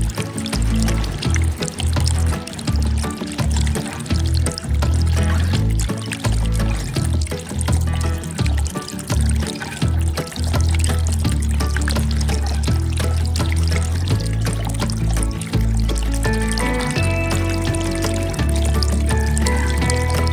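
Background music with a pulsing bass line; a clearer melody of held notes comes in about three-quarters of the way through.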